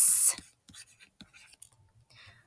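A short loud hiss of speech at the start, then faint, scattered ticks and scrapes of handwriting input as a word is written with a digital annotation pen.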